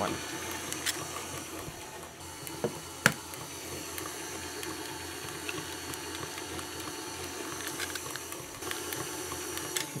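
Electric stand mixer running steadily at medium speed, its motor humming as the beater turns through a thin, sloppy chocolate batter while an egg is added. A few short sharp clicks sound over it, the loudest about three seconds in.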